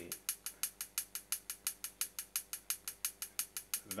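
A ride bell sample played in a rapid, even pattern of short, bright ticks, about six a second, with very pointy transients.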